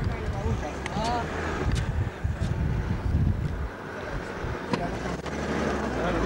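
Vehicle driving fast over a rough dirt track: a continuous low engine and road rumble with scattered knocks and rattles.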